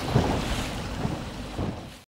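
Speedboat under way: its outboard motor running beneath heavy wind noise on the microphone, with a few low thumps, fading out at the very end.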